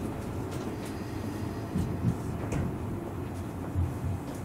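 Cabin running noise of a Tobu 500 series Revaty electric train: a steady low rumble from the wheels on the rails, with a few light knocks about two seconds in and near the end.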